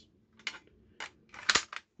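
Handling noise from a Colt SP-1 AR-15 rifle: a few sharp clicks, then a short, louder cluster of clicks like a rattle about one and a half seconds in.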